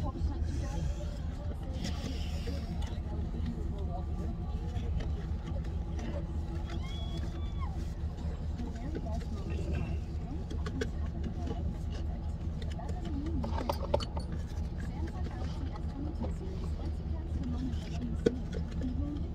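Indistinct voices in the background over a steady low hum.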